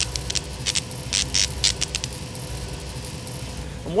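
A run of sharp, irregular high-pitched clicks through the first two seconds or so, over a steady low hum with a faint steady tone.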